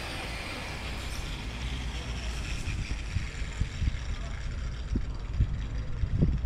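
Wind buffeting the microphone: a low rumble with irregular gusts that grow stronger near the end.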